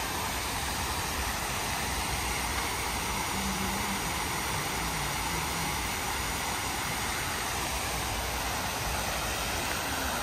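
Steady rush of a large fountain's water jets splashing into its basin, with a low rumble underneath.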